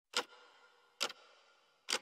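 Newton's cradle: its steel balls clicking against each other three times, about a second apart, each click followed by a short metallic ring.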